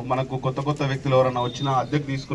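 A man's voice talking without pause: news narration.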